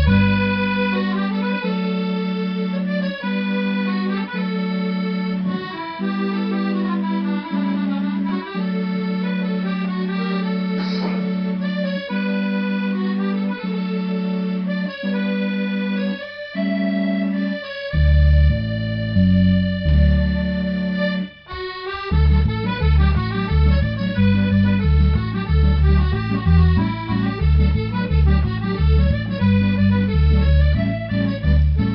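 Piano accordion playing an instrumental introduction to a folk song: a right-hand melody over long held bass notes. After about 18 seconds, following a brief break, the left hand settles into a steady alternating bass-and-chord rhythm.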